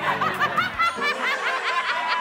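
A woman laughing loudly: a quick run of short, high-pitched laughs, drawn out into a held high note near the end.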